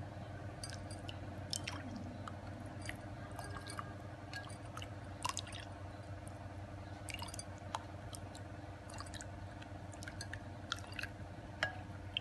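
Metal ladle stirring a thin liquid sauce in a ceramic bowl: irregular light clicks and clinks of the ladle against the bowl with soft liquid sloshing, over a steady low background hum.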